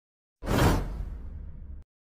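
Whoosh sound effect for an animated logo: a sudden swish about half a second in, with a low rumble trailing under it that fades and then cuts off sharply just before the end.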